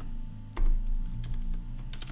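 Computer keyboard being typed on: a few separate keystrokes while code is edited, one sharper click about half a second in.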